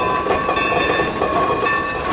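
Steam locomotive whistle held in a steady multi-note chord, over the continuous noise of the locomotive moving along the track.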